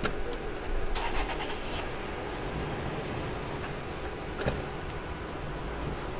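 Car engine running close by in the street, with a louder noisy stretch about a second in and a sharp knock a little after four seconds.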